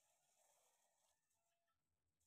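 Near silence, with a faint rustle of a plastic bag being handled during the first second or so.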